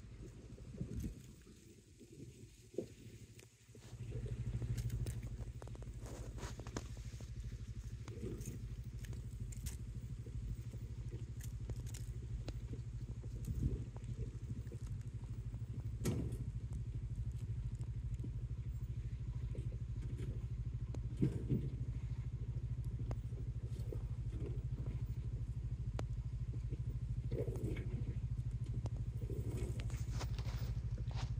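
BigHorn 550 side-by-side UTV's engine running at low revs in low-range four-wheel drive as it eases down a steep, rocky trail. A steady low hum swells about four seconds in, then grows slowly louder as the machine comes closer, with scattered knocks and clicks.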